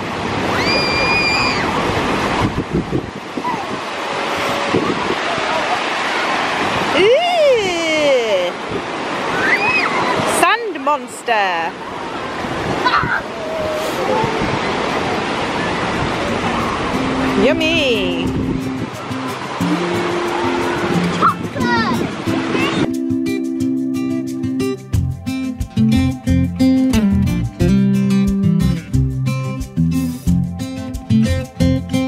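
Steady wash of waves on a beach with scattered distant children's shouts and shrieks. About two-thirds of the way in, strummed acoustic guitar music fades up and takes over.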